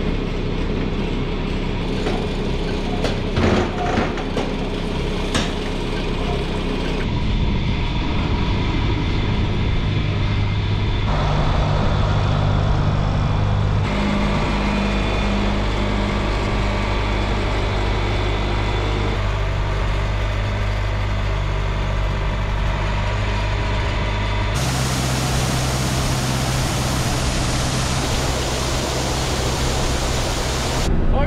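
Tractor engine running steadily, with a few sharp metal clinks and knocks in the first several seconds. The engine note and level jump abruptly several times.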